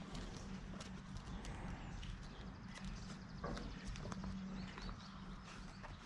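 Faint, irregular clicks and taps of comic books in plastic sleeves being flipped through in a cardboard box, several a second.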